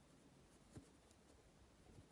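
Very faint scratching of a pen writing on paper, with a light tick about three quarters of a second in.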